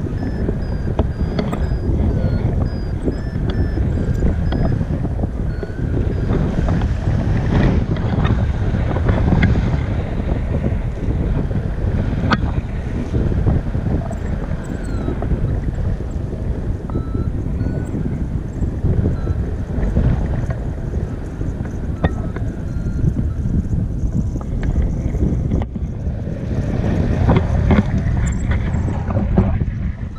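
Airflow buffeting an action camera's microphone in paraglider flight, a steady loud rumble with gusty swells.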